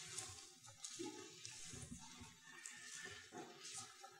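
Near silence: faint room tone with a few soft, scattered rustles of Bible pages being turned.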